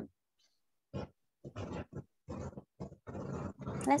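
Muffled, garbled voices answering in short, choppy fragments, as heard over an online video call.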